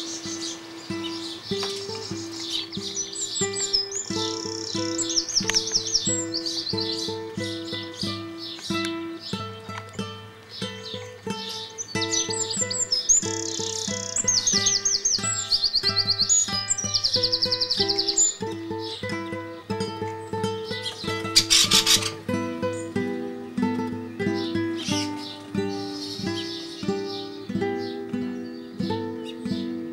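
Classical guitar music playing, with songbirds singing over it in two bouts of fast, high trilling phrases, one early on and one in the middle. A short burst of noise comes about two-thirds of the way through.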